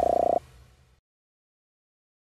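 Electronic outro sound effects: a loud buzzy, rapidly pulsing tone over a whooshing noise with a low rumble. The tone cuts off sharply less than half a second in, leaving a faint tail that fades out within a second.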